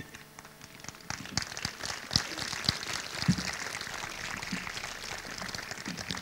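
Audience applauding: a steady patter of many hands clapping that builds up about a second in.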